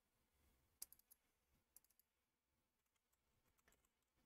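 Near silence with a few faint computer keyboard clicks, a quick cluster about a second in and one more near two seconds in.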